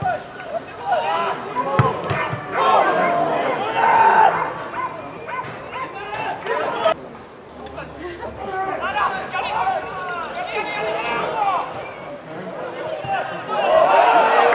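Men's voices shouting and calling across a football pitch during play, with a single dull thump about two seconds in. The voices swell near the end.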